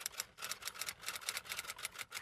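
Typewriter-style typing sound effect: a rapid, even run of key clicks, about eight a second, timed to on-screen text being typed out letter by letter.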